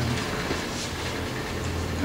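Steady room noise, a low hum with a faint hiss under it, in a gap between a man's spoken sentences.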